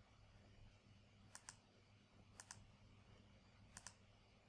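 Computer mouse button clicking, three times about a second apart, each a quick double tick of press and release, over faint room hiss.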